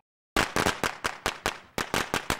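A string of firecrackers going off: a rapid, irregular run of sharp cracks starting about a third of a second in, coming faster near the end.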